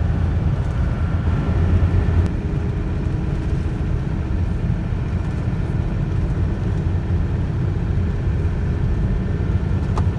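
Steady low rumble of engine and tyre noise inside a vehicle's cabin while it drives along a highway. A faint high whine stops with a small click a couple of seconds in.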